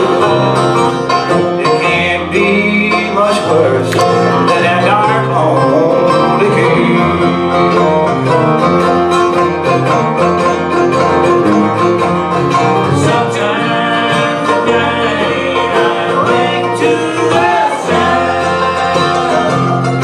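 A bluegrass band playing live: five-string banjo, mandolin, acoustic guitar and electric bass guitar, with the bass walking steadily under fast picked notes.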